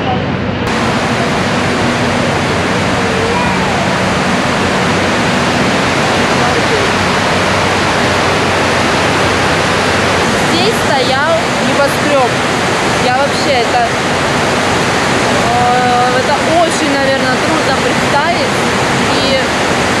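Water cascading down the walls of the 9/11 Memorial reflecting pool, a steady rush of falling water. People's voices sound over it in the second half.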